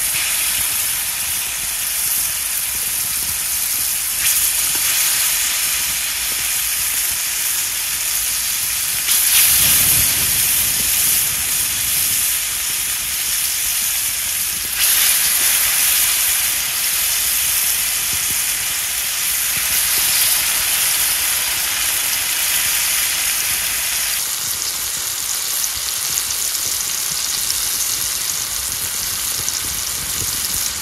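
Marinated masala fish steaks sizzling loudly in hot oil on an iron tawa, a steady spitting hiss that swells louder several times as more pieces are laid into the pan, then settles a little near the end.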